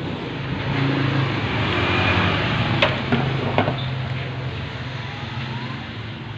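A motor vehicle engine running steadily with a low hum, swelling in the first few seconds and easing off, with a couple of sharp clicks about three seconds in.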